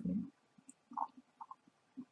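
A woman's lecturing voice trailing off at the end of a word, then a pause with only a few faint short ticks, the clearest about a second in.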